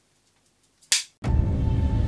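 A film clapperboard snapped shut once, a single sharp clack about a second in. Just after it, a trailer soundtrack starts: a deep, steady low music drone with a faint high held tone over it.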